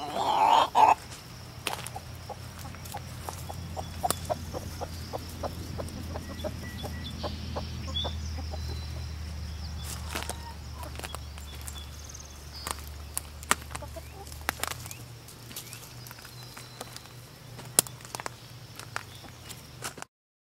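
Backyard hens clucking as they forage, with one louder call right at the start and scattered short clucks after it. A low steady hum runs underneath and stops about three-quarters of the way through.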